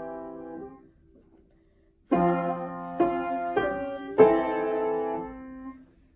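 Weinbach upright piano playing block chords of a harmonic progression in F major. A held chord dies away about a second in, and after a short pause four chords are struck, the last one held and released near the end.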